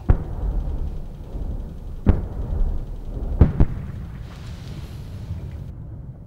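Battlefield explosions: four sharp blasts over a steady low rumble, one at the start, one about two seconds in, and a close pair about three and a half seconds in.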